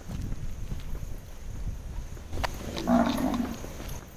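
A cow lowing once, a short, deep call about three seconds in, startling enough to be taken for a tiger.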